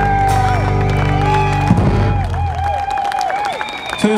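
A live band's final held chord, ending abruptly under two seconds in, with the audience cheering, whooping and clapping over and after it.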